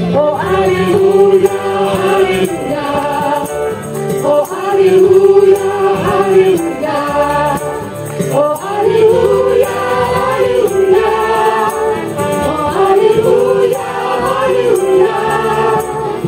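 A choir singing a Christian praise song with instrumental accompaniment, in sung phrases of long held notes.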